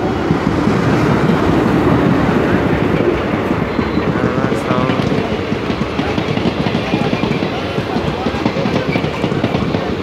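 Passenger train rolling past close alongside the platform, locomotive first and then its coaches, with a loud steady rumble and rapid clatter of wheels over the rails.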